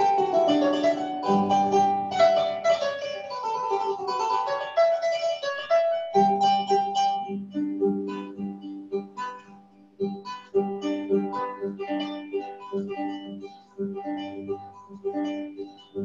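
Solo kora (West African harp) being plucked: quick, busy melodic runs for about the first six seconds, then a sparser repeating figure over steady bass notes.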